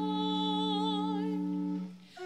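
Sung liturgical music: a voice holds one long note with vibrato over steady sustained accompaniment chords, and the phrase fades out near the end.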